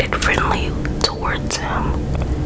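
Whispered speech, with a steady low hum underneath.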